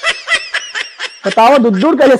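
Human laughter: quick, high-pitched giggling in rapid short bursts, then a much louder, longer laugh starting a little past halfway.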